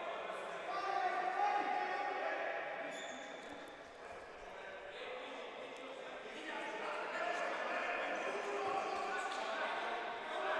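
Players' voices calling and shouting across a reverberant sports hall, with a futsal ball knocking a few times on the wooden court floor.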